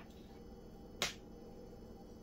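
A single sharp click about a second in, with a fainter one at the very start, over quiet room tone.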